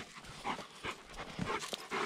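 A dog panting, a series of short, quick breaths.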